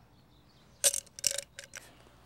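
Low background, then about a second in a brief cluster of short clicks and rustles, typical of hands handling a plastic-lined mold.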